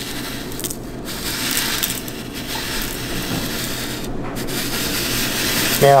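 Gold flakes and small nuggets sliding down a creased paper funnel into the metal pan of a digital scale: a continuous gritty trickle, with short breaks just before one second and around four seconds in.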